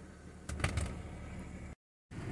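BMW N52 straight-six idling, heard low and steady from inside the cabin. A short run of knocks and clicks comes about half a second in, and the sound cuts out abruptly near the end.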